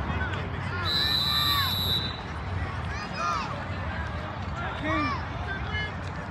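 Open-air sideline ambience of scattered, distant voices and shouts from players and spectators. About a second in, one steady high whistle blast sounds for just over a second.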